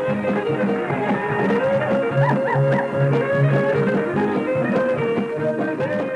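A western swing band playing an instrumental passage, with guitar prominent over held melody notes, heard on an old live radio broadcast recording from 1958.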